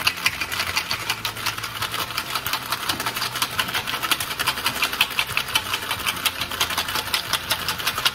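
Ice rattling hard inside a metal cocktail shaker shaken vigorously by hand, a fast, steady run of knocks several times a second that carries on without a break.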